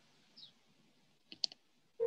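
Two sharp computer mouse clicks in quick succession about one and a half seconds in, over faint hiss, as the red pen tool is selected in a whiteboard app.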